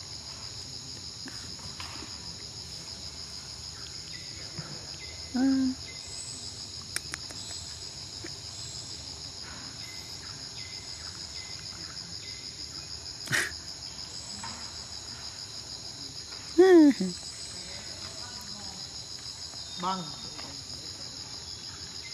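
Steady chorus of insects, a continuous high buzz. A few short, falling voice-like calls cut across it, the loudest a little past the middle, and there is one sharp click.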